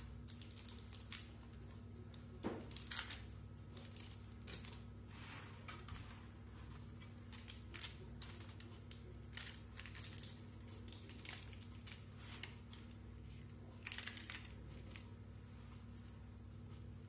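Silicone spatula spreading cake batter over parchment paper in a metal baking tray: irregular short scrapes, rustles and light clicks, over a low steady hum.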